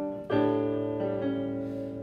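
Electronic keyboard on a piano sound playing held chords: a new chord is struck about a third of a second in, and its lower note changes about a second in.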